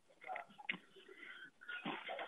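Faint sounds coming over an open caller's telephone line, thin and cut off at the top like a phone call, with a louder patch near the end.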